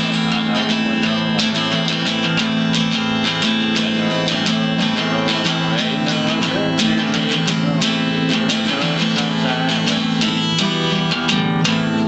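Richwood acoustic guitar strummed continuously in a fast, even rhythm, full chords ringing under each stroke.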